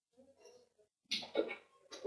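Mostly quiet, then a man's short cough in two quick bursts a little over a second in.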